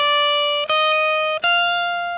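Epiphone SG electric guitar playing a short lead phrase: three held single notes on the high E string, each ringing about two-thirds of a second, the last one the highest.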